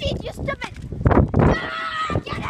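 Boys' voices shouting and laughing excitedly while running, ending in one long held call near the end.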